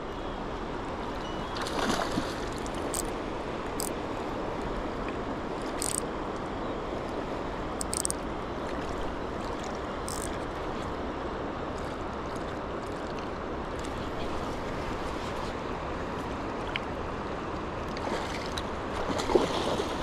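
Steady rush of river current flowing close by, with a few brief faint ticks scattered through the first half.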